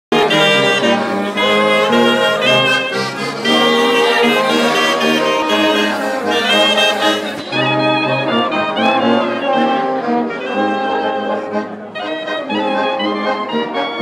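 Small wind band playing together in held chords: clarinets, trombone and tuba with an accordion, the tuba carrying the bass line.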